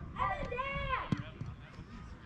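A person's high-pitched, drawn-out shout lasting under a second, its pitch rising and then falling. A single sharp click follows just after.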